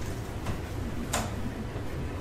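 Laptop keyboard keystrokes: a few separate key taps, the loudest a little past a second in, over a steady low hum.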